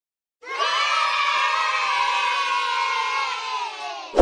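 A group of children cheering together in one long, sustained shout that starts about half a second in and tapers off near the end.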